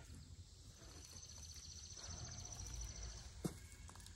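Quiet outdoor ambience with a high, rapid insect trill. The trill starts about a second in, lasts roughly two and a half seconds, and is followed shortly by a single faint tap.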